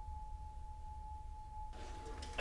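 A single faint, steady pure tone, held at one pitch without change, over a low background rumble.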